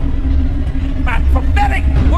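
A preacher's voice, heard in short shouted phrases, over a deep, steady low rumble with a held hum above it.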